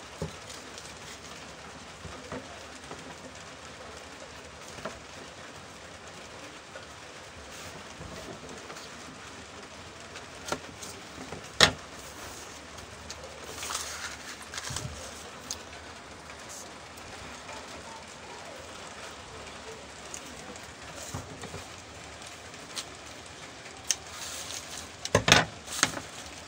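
Masking tape being pulled off the roll and stuck onto brown pattern paper, with paper crackling and being handled near the end. A single sharp tap about twelve seconds in, over a steady low hiss.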